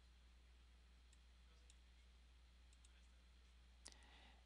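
Near silence: faint room tone with a low steady hum, a few very faint ticks, and one slightly louder click just before the end.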